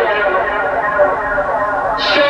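Playback of a sung vocal layer drenched in psychedelic delay: the repeating echoes of the voice run together into one continuous, somewhat muffled wash, which brightens near the end.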